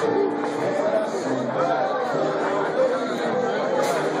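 Chatter of many people in a crowded supermarket, with music playing along with it.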